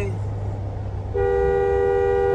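Vehicle horn: one steady two-note blast of about a second and a half, starting just past a second in, over the low hum of engine and road noise in a moving car's cabin.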